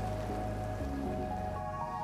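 Soft background music of several sustained notes, high and low, held steady over an even hiss.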